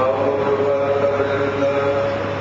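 Devotional chanting, with notes held for a second or more, over a steady low hum.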